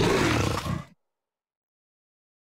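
A big-cat growl used as a sound effect on the Jaguar logo: one short roar of about a second that starts suddenly and cuts off.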